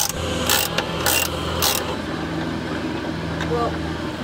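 Hand ratchet wrench clicking in three quick strokes, about half a second apart, in the first two seconds as a suspension bolt is loosened. A steady low hum runs underneath.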